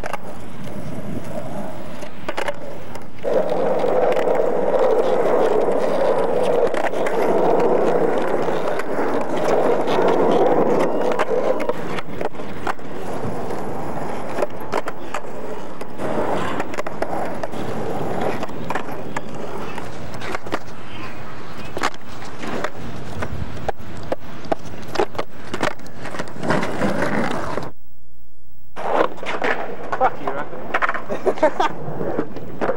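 Skateboard wheels rolling on rough asphalt, loudest for several seconds near the start, with repeated sharp clacks of the board popping and landing on the pavement.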